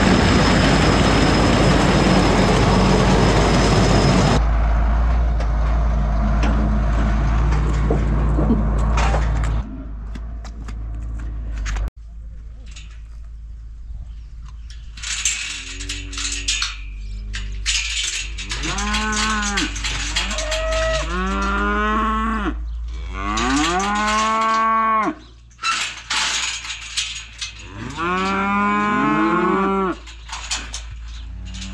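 A tractor-driven feed auger runs loudly, unloading ground corn, then goes on more quietly until it cuts off about twelve seconds in. From about fifteen seconds in, beef cattle moo again and again in long calls that rise and fall, several overlapping near the end.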